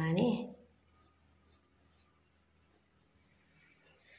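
Faint short strokes of a pencil on paper, a handful of separate scratches with the clearest about two seconds in, after a spoken word trails off at the start.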